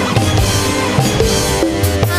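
Instrumental band music: a drum beat with bass drum and snare hits under sustained melody notes, with no singing.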